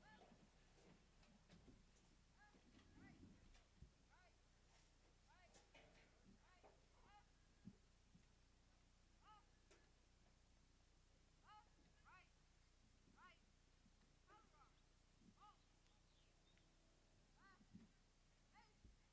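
Near silence, broken by scattered short, faint bird calls, a few each second or two, each a brief arched chirp.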